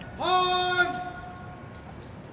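A drill team member's shouted drill command: one long call held at a steady high pitch, starting about a quarter second in and ending before the one-second mark. A few faint clicks come near the end.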